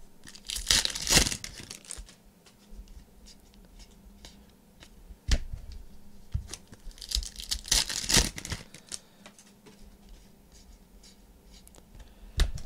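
Foil wrappers of 2015/16 Panini Revolution basketball card packs crinkling and tearing open in two bursts, about a second in and again around eight seconds in, with light taps of packs and cards on the table between, one sharper about five seconds in.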